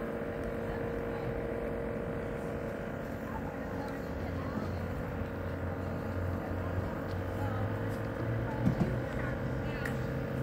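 A vehicle engine running, its low drone coming in about four seconds in and creeping up in pitch, over a steady hum, with faint voices in the background.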